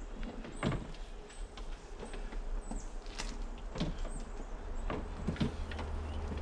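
A stainless-steel continuous inkjet printer cabinet being turned around on a plywood tray, making scattered knocks and scrapes.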